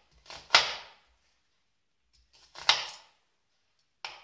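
Kitchen knife cutting through a peeled onion and striking the cutting board: a sharp knock about half a second in, and another near three seconds.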